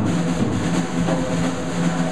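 Jazz drum kit played solo in a fast, continuous run of strokes on the snare and drums.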